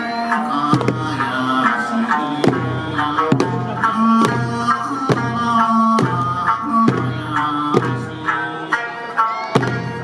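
Eisa drumming: hand-held paranku drums struck together on a steady beat, a little more than once a second. Under it plays an Okinawan folk song with a melody line.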